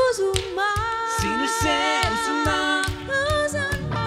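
A man and a woman singing a worship song together, with little accompaniment beyond a steady low beat.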